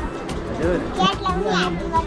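Children's voices chattering and calling out while playing, high-pitched and lively.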